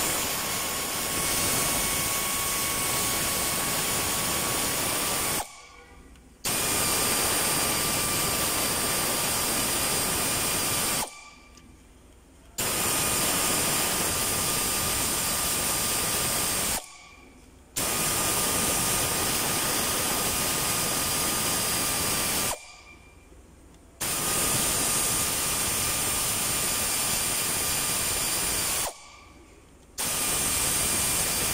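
Air ratchet running down camshaft bearing cap bolts: a steady hiss of air with a high whine, in five runs of about five seconds each, with short pauses between them.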